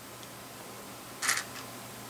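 Quiet room tone with one brief, soft rustle about a second in.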